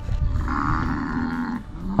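One of the cattle bellowing once, a single drawn-out call lasting about a second.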